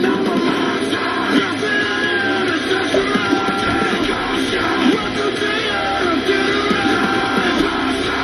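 Rap song playing at full volume: a male voice rapping over loud, dense backing music.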